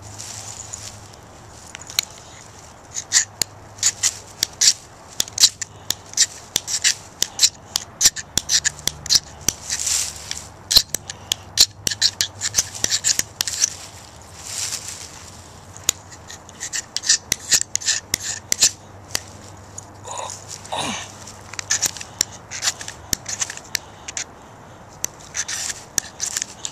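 Knife blade scraping shavings off a magnesium fire-starter block: runs of quick, short scraping strokes, broken by a few brief pauses.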